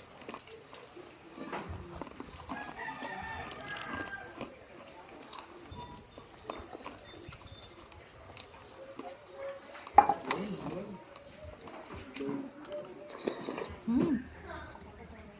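Background ambience of short, repeated high bird chirps over a low murmur, with one sharp knock about ten seconds in.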